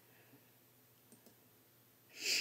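Near silence: room tone with two or three faint computer-mouse clicks.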